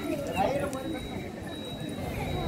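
Indistinct voices of several people talking over one another, with a faint steady high-pitched tone underneath.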